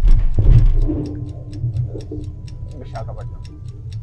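Countdown-timer ticking sound effect, about four ticks a second, over a steady low rumble in a gondola cable-car cabin. The rumble swells loudly in the first second.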